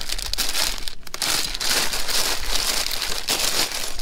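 Plastic LEGO minifigure blind-bag packets crinkling and rustling in irregular bursts as a hand rummages through a wire bin of them.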